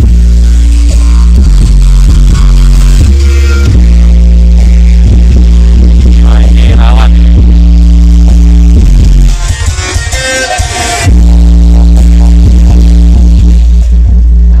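Music played extremely loud through a large sound system with nine subwoofers, dominated by heavy, sustained deep bass. After about nine seconds the bass drops out for nearly two seconds, leaving quieter higher sounds, then comes back in at full force.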